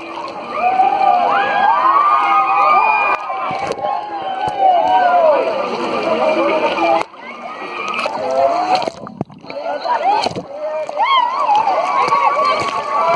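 Wave-pool water sloshing and splashing around the camera, under many people's overlapping shouts and squeals. The sound drops out sharply about seven seconds in, then returns.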